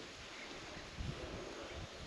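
Faint outdoor background noise with a low, uneven wind rumble on the microphone and a soft bump about a second in.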